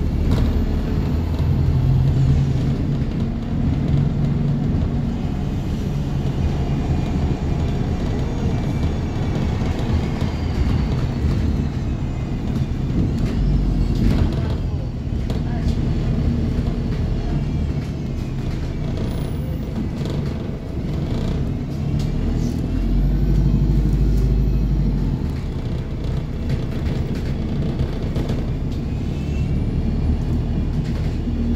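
Inside a moving single-deck bus: the engine drones steadily, its pitch shifting up and down as the bus changes speed, over road rumble and small rattles from the cabin. A higher whine rises and falls a couple of times as the bus pulls away.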